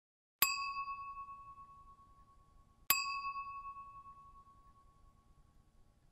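Two bell-like ding chimes about two and a half seconds apart, each ringing out and fading over about two seconds: an edited-in sound effect marking pins dropping onto a map.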